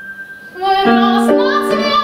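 A held grand piano chord fades away, then about half a second in a young woman's voice comes in singing over piano accompaniment.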